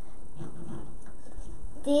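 Only soft, indistinct speech over a steady background hiss, with a clearer spoken word near the end.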